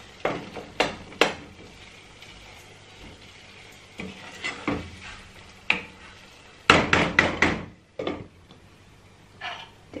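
Wooden spoon stirring and scraping through thick curry in a non-stick pot, knocking against the pot's sides. A quick run of about five sharp knocks comes around seven seconds in, and then the glass lid is set on the pot.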